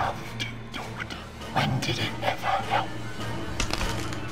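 Dramatic television score with a steady low drone, and short voice-like cries over it about halfway through.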